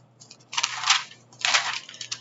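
Paper rustling twice as a spiral notebook page is turned.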